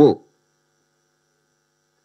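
A man's voice trails off in the first moment, then a pause of near silence with only a faint, steady electrical hum.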